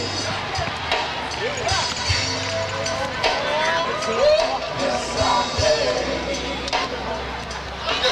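Live gospel band playing: a steady bass line with irregular drum thumps under sliding, bending melodic phrases.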